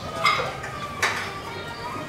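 Two sharp clinks of hard objects knocking together, about a second apart, the first the louder, each with a short ringing.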